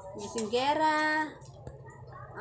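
A high voice calling out one long, drawn-out call, about a second long, rising in pitch and then held steady, much like the repeated calls of "Ina!" ("mother") around it.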